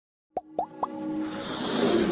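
Electronic logo-sting sound effects: three quick upward-sweeping bloops about a quarter second apart, then a swelling whoosh with held synth tones building toward the end.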